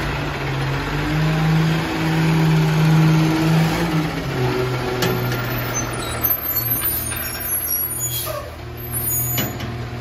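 Garbage truck's diesel engine speeding up under load for the first four seconds while the automated side-loader arm reaches out on its hydraulics, then dropping back toward idle. A short sharp hiss about five seconds in, like an air brake, is followed by faint high squeaks.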